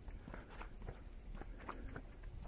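Faint footsteps of a person walking on a paved path, two or three steps a second.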